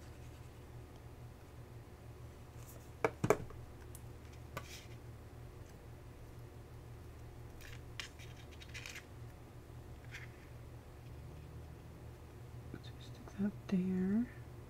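Quiet handling sounds of papercrafting: two sharp clicks about three seconds in, then faint scattered rustles and taps of cardstock and die-cut paper pieces being placed and pressed onto a card. A steady low hum runs underneath.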